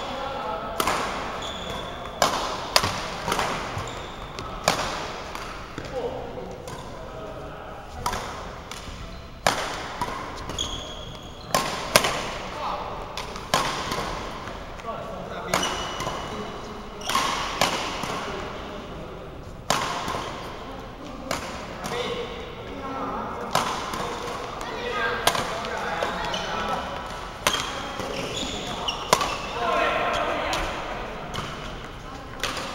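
Badminton rackets striking a shuttlecock in doubles rallies: sharp cracks about every second or so, with voices in the hall between the strokes.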